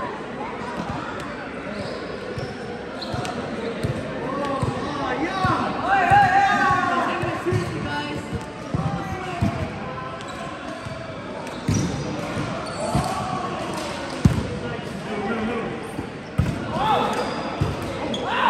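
Volleyball being played in a large sports hall: several sharp smacks of the ball in the second half, the loudest about fourteen seconds in, among players' shouts and calls that echo around the hall.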